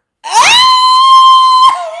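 A woman's loud, high-pitched squeal of amusement. It swoops up, is held on one pitch for about a second and a half, then breaks off near the end into a lower, falling laugh-like note.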